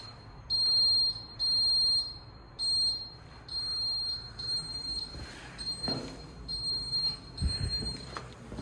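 Advanced MX fire alarm control panel's internal fault buzzer beeping, a high-pitched tone pulsing on and off about once a second. The panel is signalling a fault, caused by a ground-floor sounder having been removed. A few low knocks come near the end.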